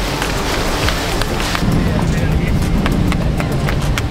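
Rushing wind and water noise of a motorboat underway, with background music.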